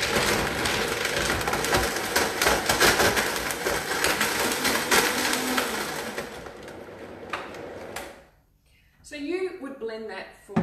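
High-powered countertop blender running at full speed, blending a smoothie of spinach, blueberries and banana, with a crackling chatter as the pieces hit the blades. It winds down and stops about eight seconds in.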